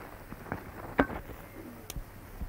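A few sharp knocks and clicks, the loudest about a second in, a softer one before it and a thin high click near the end, over faint room noise.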